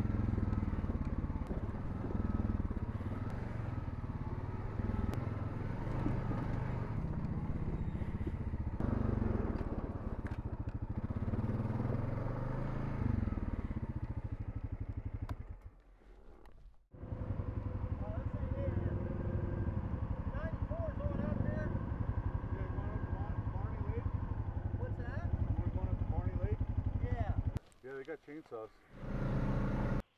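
Honda Rubicon ATV engine running steadily under a rider on a rough trail. About halfway through it drops away for a second, then carries on.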